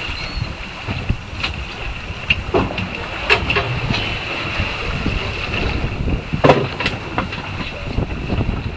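Steady hum aboard a party fishing boat, with a constant high whine and wind on the microphone. A few short clicks and knocks are scattered through it, the strongest about six and a half seconds in.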